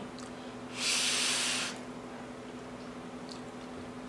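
One short, hissing breath of air from a person, just under a second long, about a second in, over a faint steady hum.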